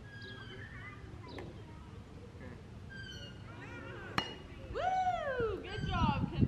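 A pink youth softball bat strikes a pitched softball once about four seconds in, a single sharp metallic crack. A voice calls out right after with a long falling pitch, and faint distant voices come and go throughout.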